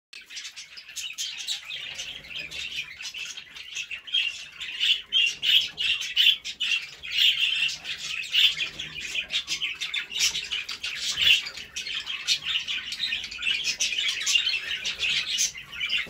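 Aviary birds, budgerigars among them, chirping and chattering without a break, many short quick calls overlapping.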